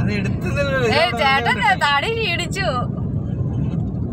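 Steady low rumble inside a moving car's cabin. A high-pitched voice sounds over it for the first three seconds or so and then stops, leaving only the rumble.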